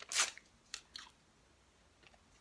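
Paper being bitten or crunched: three short crisp crunches, the first the loudest.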